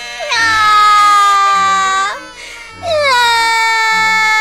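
A child's voice crying in two long, high-pitched wails, each dropping in pitch at the start and then held, the second beginning just under three seconds in; soft background music underneath.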